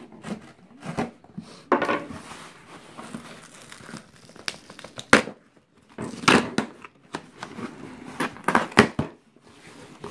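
Packing tape being peeled and ripped off a cardboard shipping box, and the cardboard flaps pulled open. It comes as irregular ripping and crinkling, with sharp loud tears about two seconds in, five seconds in, and twice close together near the end.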